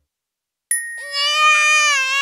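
A cartoon baby's voice starts crying about two-thirds of a second in, after a brief silence: a held wail that begins to warble near the end. A thin high tone starts with it.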